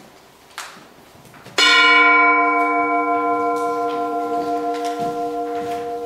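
A bell struck once about a second and a half in, ringing with several pitches at once and fading only slowly, still sounding at the end.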